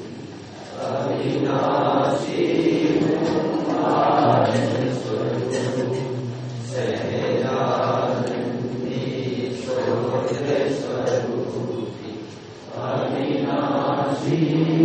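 A group of voices chanting together in a sung devotional recitation, held notes broken by short pauses between phrases, about half a second, seven seconds and twelve and a half seconds in.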